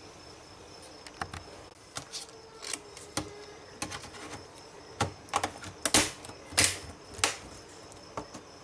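Plastic laptop keyboard being fitted back into the palmrest of a Dell Vostro laptop and pressed into place: a scatter of light clicks and taps, louder and closer together in the second half.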